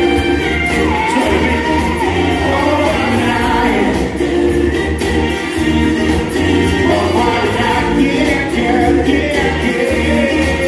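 A male singer performing live into a microphone over a loud backing track, singing continuously through a pop song, heard from the audience floor.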